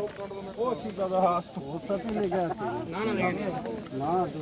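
Men's voices talking over one another in a continuous babble.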